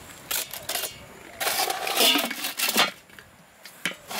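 Metal lid of a charcoal kettle grill being set back on: a short scrape, then a longer scraping clatter of metal on metal, and a small click near the end.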